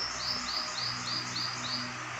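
A small bird calling: a quick, even series of about seven high chirps, roughly three and a half a second, stopping near the end, over a faint steady low hum.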